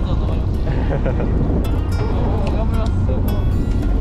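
Steady low drone of a fishing boat's engine, running evenly throughout, under background music and faint voices.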